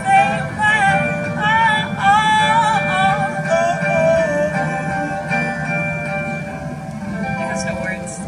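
A woman singing live into a microphone, a wordless run of bending notes that settles onto a lower held note about four seconds in. A sustained chord continues underneath and fades away near the end, as the song closes.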